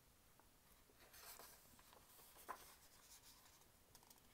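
Faint rustle of a picture book's paper page being turned by hand, with a small tap about two and a half seconds in.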